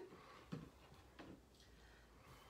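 Near silence: room tone, with two faint small clicks, one about half a second in and one just over a second in.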